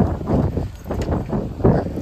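A few footsteps on dry dirt close to the microphone, as separate knocks.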